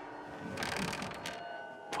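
Quiet, eerie background music with sustained bell-like tones, and a few faint knocks in the middle and near the end, heard as a noise on the stairs.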